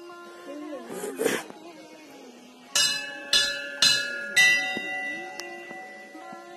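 Hanging brass temple bell struck four times, about half a second apart, each strike ringing on and slowly fading, over background music. A brief rush of noise comes about a second in.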